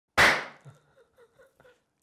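A sudden loud smack that fades over about half a second, followed by a few faint short chuckles.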